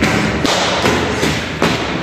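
A few dull thumps of footsteps on a staircase, together with knocking and rubbing handling noise from a handheld camera.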